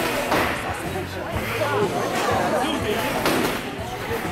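Crowd voices and background music, broken by three sharp knocks, one at the start, one about a second in and one near the end, from combat robots slamming into each other.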